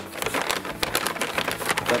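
Rapid crinkling rustle of a bag of hickory wood chunks being handled.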